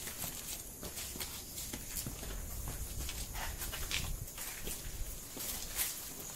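Footsteps on concrete steps littered with dry leaves: irregular light scuffs and taps, with some low rumble from the moving camera, over a faint steady high-pitched drone.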